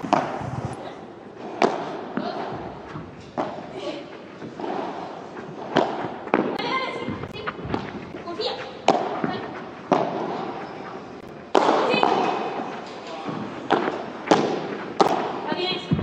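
Padel rally: the ball is struck back and forth with padel rackets and rebounds off the glass walls of the court. There is a sharp hit about every second.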